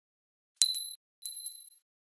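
Animation sound effect of a glass Christmas bauble bouncing: two bright, high dings about half a second apart, the second softer, each ringing briefly.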